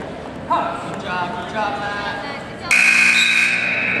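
Gym scoreboard buzzer sounding about two and a half seconds in and holding steady for over a second, marking the end of the first period of a wrestling bout. Before it come shouting voices.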